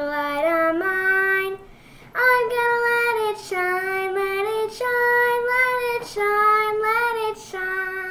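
A child singing a slow song alone, holding each note, with a short pause for breath about two seconds in.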